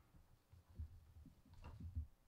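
Near silence: faint, irregular low thuds and a couple of soft clicks, the loudest just before the end, from people moving about at a lectern and handling paper near its microphone.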